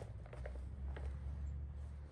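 A few faint soft knocks and clicks from people moving on a trampoline, over a steady low rumble on the phone microphone.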